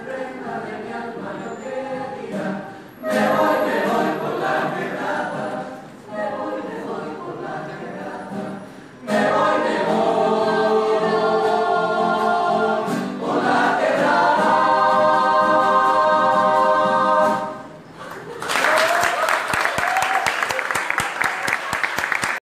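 Mixed choir singing a cappella in phrases with short breaths between them, swelling into a long held chord, then stopping. Applause follows near the end, with a shout or two over it.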